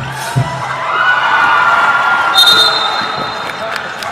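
A basketball thumps twice at the start, then spectators and players shout and cheer, swelling and fading over a couple of seconds. A short shrill whistle sounds about halfway through.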